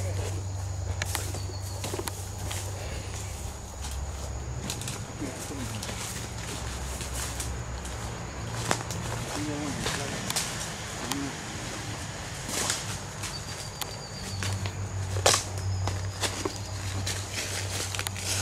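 Footsteps in rubber boots crunching through dry leaf litter and twigs, with scattered sharp crackles and snaps, over a steady low hum.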